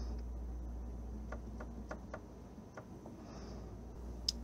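Faint, scattered light clicks and ticks of a plastic soda bottle being handled after printing paint onto a canvas, over a steady low hum.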